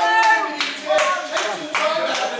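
A few people hand-clapping in irregular, scattered claps, with a man's voice speaking over them.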